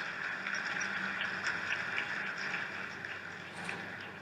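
Audience applauding, a dense patter of clapping that starts to fade near the end.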